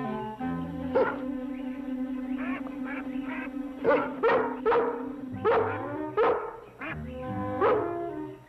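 A rough collie barking several times: one bark about a second in, then a run of barks in the second half, over orchestral music with a long held note.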